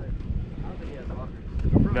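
Low rumble of an off-road SUV's engine, with wind buffeting the microphone and faint voices.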